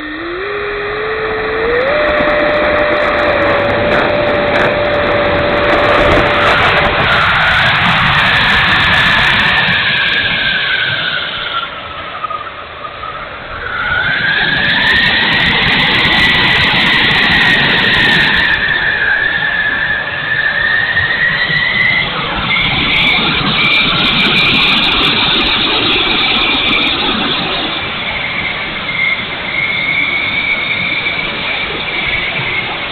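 An E-flite F-16 RC jet's 70 mm electric ducted fan heard from its onboard camera. The fan spools up with a quickly rising whine in the first two seconds, then runs at high power through takeoff and flight with a rush of air. Its whine falls about halfway through and climbs again as the throttle changes.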